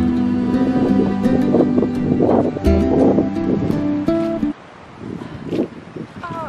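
Background music on plucked strings, strummed in a steady pattern, that stops about four and a half seconds in. After it stops, faint wind and rustling are left.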